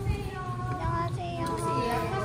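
A song with a high singing voice, its melody moving in short held notes.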